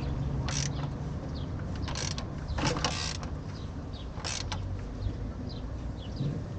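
Peugeot 307 engine being turned over by hand with a wrench during a timing-belt job, so that the new belt and tensioner move: four short scraping bursts, irregularly spaced.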